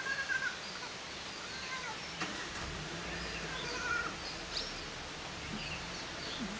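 Wild birds calling in forest: a scatter of short, arching whistled notes over a steady background hiss.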